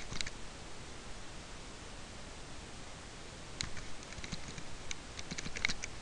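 Typing on a computer keyboard: a couple of keystrokes, a pause of about three seconds, then a quick run of keystrokes in the second half.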